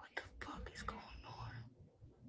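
Faint whispering from a person close to the microphone, with a few sharp clicks in the first second.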